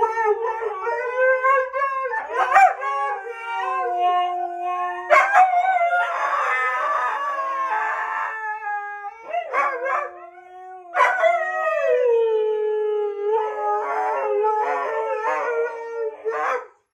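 Siberian huskies howling together: long, held howls in two overlapping pitches. About six seconds in one breaks into a rougher "awagh" yowl, and after a dip near the ten-second mark a fresh long howl starts.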